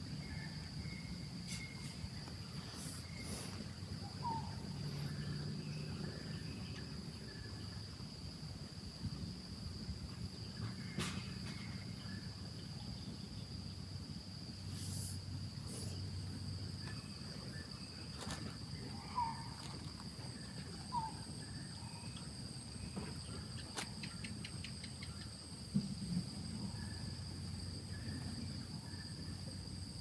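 Faint outdoor insect chorus: a steady high-pitched trill throughout, joined by a second, higher trill about halfway through. A few short chirps and a quick run of ticks a little after the middle break in now and then.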